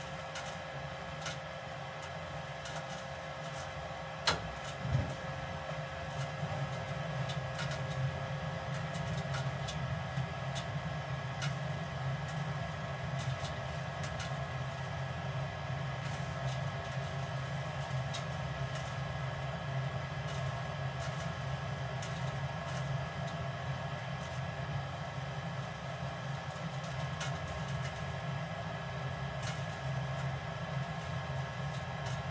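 Lennox SLP98UHV variable-capacity gas furnace running on a call for heat: a steady hum from its draft inducer fan, not yet at full speed, growing slightly louder after about six seconds. Two sharp clicks about four and five seconds in.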